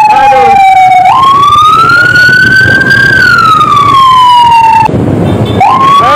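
A siren wailing: one tone that glides slowly down and up, with a jump up about a second in, a long rise and fall, a short break near the end, then another rise.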